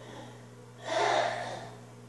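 A short, sharp breathy gasp from a person about a second in, lasting about half a second, over a steady low hum.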